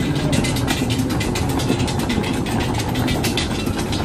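Airport moving walkway running: a steady low hum with quick, even clicking throughout.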